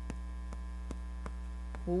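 Steady electrical mains hum, with light, irregular ticks of chalk tapping on a chalkboard as writing goes on. Speech starts again right at the end.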